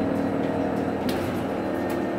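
Inside the cabin of a Proterra ZX5 battery-electric bus under way: the electric drive gives a steady hum of several held tones over road and tyre noise. Two short rattling ticks come about a second in and near the end.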